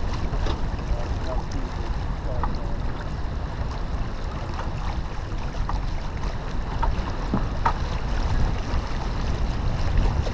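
Steady wind rumble on the microphone mixed with water rushing along the hull of a sailboat under sail.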